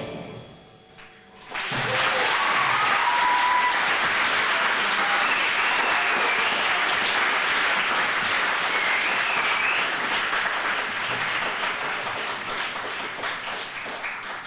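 Concert audience applauding after the song ends: the clapping starts about a second and a half in, after a short lull, and dies away near the end. A few whistles ring out over the clapping.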